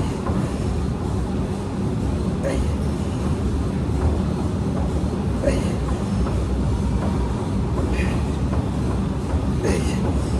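Steady gym background noise: a continuous low rumble with voices in the background and a few brief sharp sounds about every two to three seconds.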